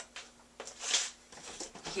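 Quiet handling sounds as a plastic protein-powder tub is picked up: a light click at the start, then a brief soft rustle about halfway through, over a faint steady hum.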